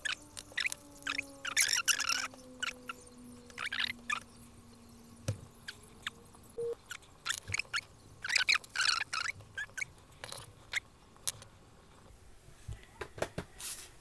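Fast-forwarded handling noise of a Rotring 800+ mechanical pencil's stylus tip being swapped and its paper leaflet handled: a quick, irregular run of small clicks and paper rustles.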